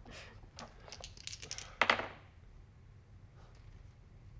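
Two twenty-sided dice rolled for a check with advantage, clattering on the table: a few light clicks and knocks over the first two seconds, the loudest near two seconds in.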